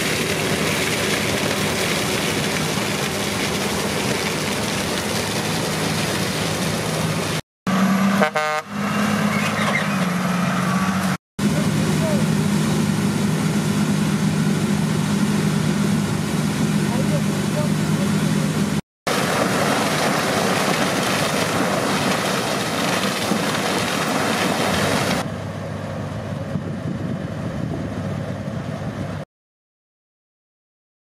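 New Holland CX combine harvester running steadily while harvesting maize, its engine and threshing machinery giving a constant hum with a deep engine note. A vehicle horn toots briefly about eight seconds in. The sound cuts off shortly before the end.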